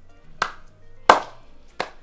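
Three sharp hand claps, about two-thirds of a second apart, the middle one the loudest, over soft background music.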